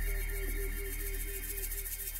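A DJ mix playing a track: a held deep bass note and a short repeating melodic figure, over a fast, even high ticking texture, slowly fading out.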